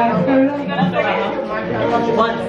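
Speech: a woman talking into a handheld microphone, with other voices chattering.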